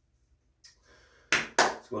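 Two sharp hand claps, about a third of a second apart, after a near-silent start.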